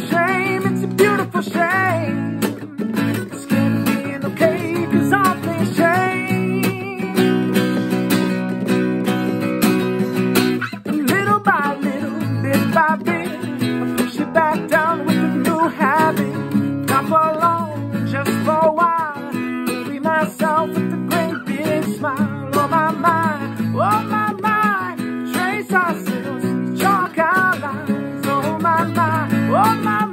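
A man singing with a strummed acoustic guitar accompaniment.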